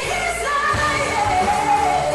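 A woman singing a pop vocal line over a backing track with bass and drums. The line climbs in the first second and settles into a long, wavering held note.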